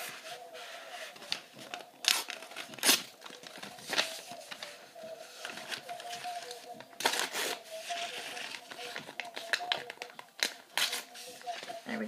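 Paper rustling and crinkling in several short, sharp rustles as drawing-book pages and sheets of paper are handled, over a faint steady hum.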